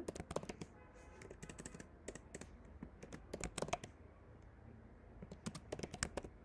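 Computer keyboard keystrokes: typing in quick irregular bursts, with a short lull about four seconds in before the clicking picks up again.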